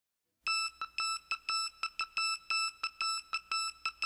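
Electronic beep tones opening the song's intro: a single high pitch sounding in a quick, Morse-code-like pattern of long and short beeps, starting about half a second in.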